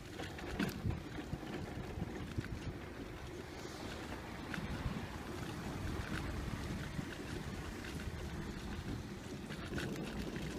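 Shopping trolley rolling over car-park tarmac: a steady rumble from its wheels with a few short rattles and knocks.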